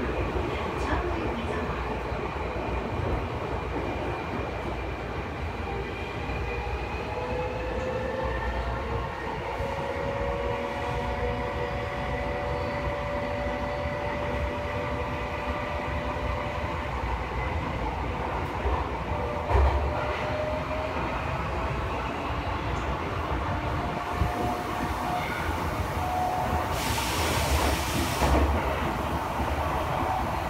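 Tokyo Metro Chiyoda Line subway train running, heard from inside the car: a steady rumble of wheels on rail under a motor whine that slowly shifts in pitch. A single thump comes about twenty seconds in, and a brief hiss near the end.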